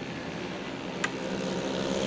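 Small 70cc mini moto engines running at race speed as a pack of bikes approaches, slowly getting louder, with a single short click about a second in.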